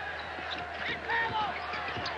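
Sounds of a basketball game in play on a hardwood court: short squeaks and the ball bouncing, over steady crowd noise in the arena.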